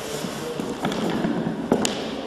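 A few sharp knocks or clicks over a steady noisy background, the loudest pair near the end.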